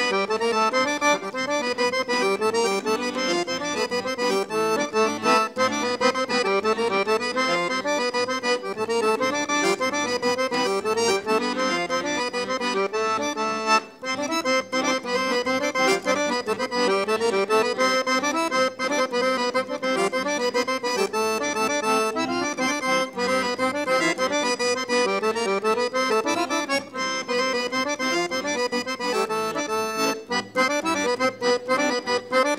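Accordion playing a fast, busy Bulgarian folk dance tune live for dancers, with a momentary break about fourteen seconds in.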